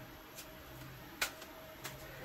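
A tarot deck being cut by hand: a few soft clicks and taps of the cards against each other, the sharpest about a second in.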